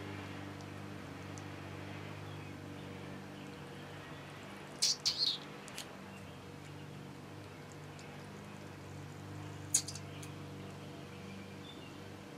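Small plastic syringe being worked to draw liquid epoxy back out of a container, giving a few short, high squeaks and clicks about five seconds in and one sharp click near ten seconds, over a steady low hum.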